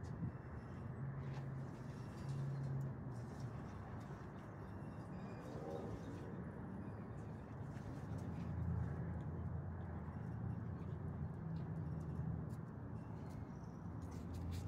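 Steady low rumble and hiss of outdoor background noise, with a short bird call about five to six seconds in.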